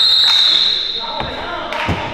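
Referee's whistle blown once, a steady shrill tone lasting about a second, over players' voices. A basketball bounces once near the end.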